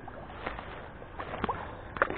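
Faint handling sounds as a fish is clipped onto a metal chain stringer at the water's edge: a few light clicks and a little water sloshing.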